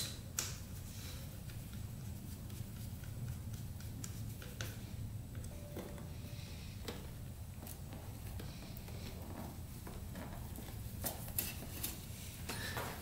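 Faint scattered clicks and taps of hand work: a screwdriver on the battery terminals and a small motorcycle battery being pushed into its holder, with a few more clicks near the end, over a low steady hum.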